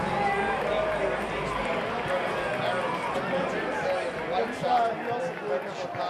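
Ballpark crowd chatter: many voices talking at once in a steady murmur.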